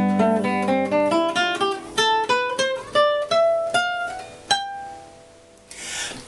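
Nylon-string classical guitar played fingerstyle in an instrumental interlude. It opens over a held bass, then single notes are picked one by one, and the last rings out and fades about five seconds in.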